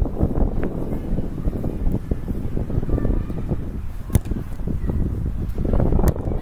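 Wind buffeting the microphone in a steady low rumble, with one sharp knock about four seconds in. At the very end a boot strikes a rugby ball off a kicking tee.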